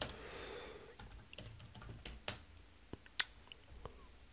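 Computer keyboard being typed on: a run of faint, irregularly spaced keystrokes.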